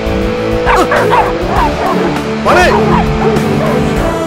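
A dog yipping and whining over a film background score: a few short calls about a second in, then a louder cluster a little past halfway.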